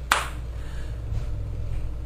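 A single sharp click just after the start, then a low steady hum.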